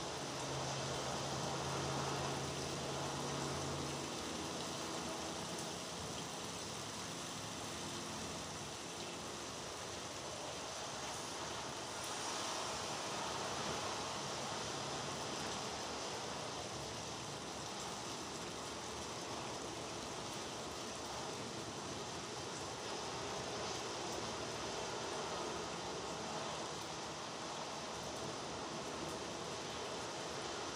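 Steady rain falling, an even hiss with no breaks, joined by a low hum during the first few seconds.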